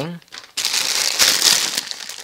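Clear plastic bag crinkling as hands handle the packaged shirt: a continuous crackly rustle starting about half a second in.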